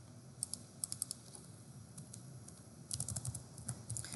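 Computer keyboard typing: two short runs of keystrokes, one about half a second in and another about three seconds in.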